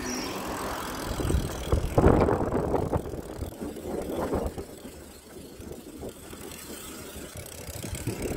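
Rushing, rumbling noise of a mountain bike being ridden along a paved street, with the ride noise growing louder about two seconds in and again around four seconds.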